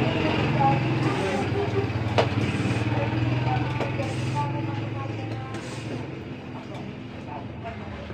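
High-pressure hand pump charging a PCP air rifle: a short hiss of air about every second and a half as the handle is stroked. Under it runs a steady low drone that fades away after about five seconds.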